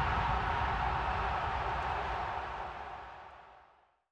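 A steady rushing noise, the tail of the outro sound design, fading out to silence near the end.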